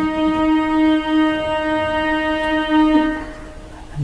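A single steady drone note with a full set of overtones, held without wavering and fading out about three seconds in.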